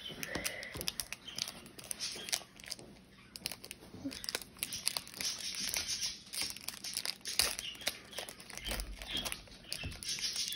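Hockey card pack wrapper crinkling and tearing as it is pulled open by hand: a run of small sharp crackles that gets busier about halfway through.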